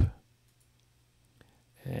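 A single faint computer mouse click against quiet room tone, about one and a half seconds in; speech ends at the start and resumes near the end.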